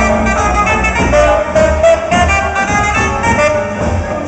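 A band playing loud festival music, led by brass and saxophone over a bass line.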